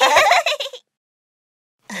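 A children's song ends: the last sung word and its backing music stop under a second in. About a second of dead silence follows, and a cartoon child's voice starts laughing right at the end.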